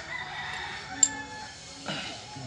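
A bird calling in the background, with one sharp click about a second in.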